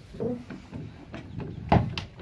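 Pump handle of a boat's hydraulic rig-tensioning ram being worked to tighten the cap shrouds: soft mechanical strokes, then one sharp clunk near the end.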